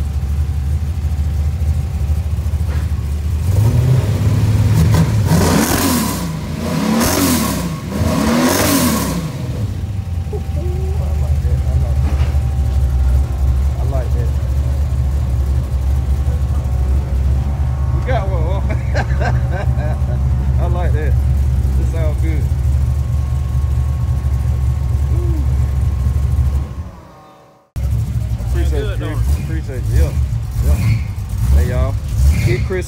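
Chevy S10's swapped 350 small-block V8 idling through a new 3-inch dual exhaust with an X-pipe and MagnaFlow mufflers, blipped three times about five to nine seconds in. The note is quiet, as intended.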